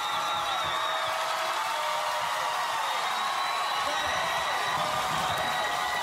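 Studio audience cheering and applauding after a song, with high held cries over steady clapping.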